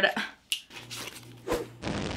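A short laugh, then a sharp click about half a second in. Near the end comes a burst of noise from an edited-in sound effect that arrives with an on-screen fireball graphic.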